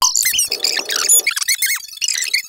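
Rapid, loud run of high-pitched squeaks and chirps that glide up and down in pitch.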